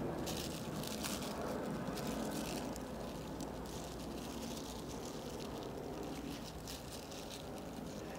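Thin clear plastic film crinkling in irregular bursts as it is wrapped tightly around a ball of damp sphagnum moss, over a low steady background rumble.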